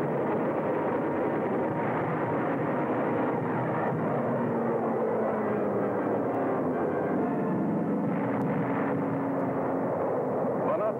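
Steady drone of aircraft engines on an old, muffled film soundtrack, with a steady low hum joining it about four seconds in.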